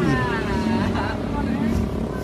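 A motorcycle engine running steadily under a man's long shout that falls in pitch over the first second.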